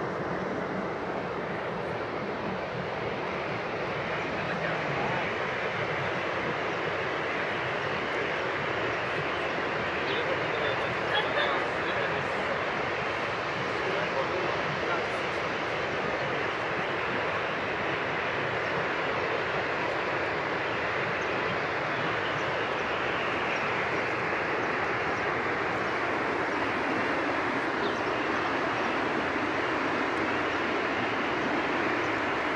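Steady rushing of the Rhine Falls, a large waterfall, as one continuous even roar of water.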